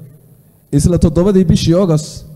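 A man speaking into a handheld microphone; he resumes after a short pause of under a second.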